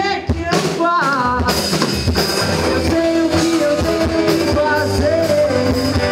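Rock band playing live: electric bass, electric guitar and drum kit, with a singing voice.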